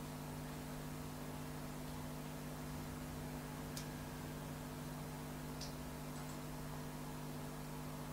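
Steady electrical hum with a background hiss in a pause between speakers, with a faint click about halfway through.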